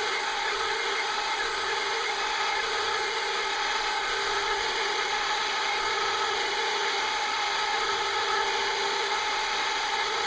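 Router spindle of a homemade CNC router running steadily with a high whine, its bit cutting MDF.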